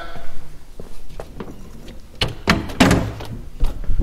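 Knocks and thuds of a detached car door with a wooden frame being carried and set down against shelving: several sharp knocks, the heaviest cluster about two and a half to three seconds in.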